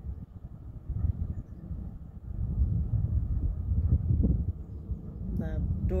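Wind buffeting the microphone outdoors, a low, uneven rumble.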